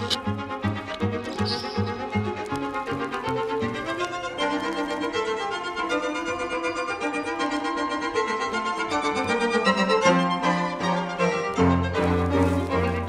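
Classical background music, with violin to the fore.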